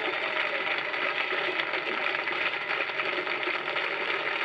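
Studio audience applauding, a dense steady clapping.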